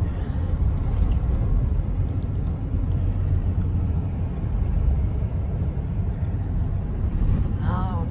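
Steady low road and engine rumble heard from inside a car's cabin as it cruises along a highway.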